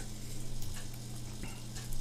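A steady low hum with an even hiss over it: the background noise of the recording, with no distinct event.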